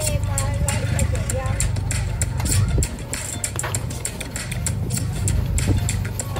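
Busy food-truck kitchen: a steady low machine hum with frequent short clinks and knocks of utensils and dishes on a stainless-steel counter, under faint voices and music.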